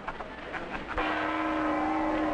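A steady pitched tone with many overtones starts suddenly about a second in and holds at one pitch.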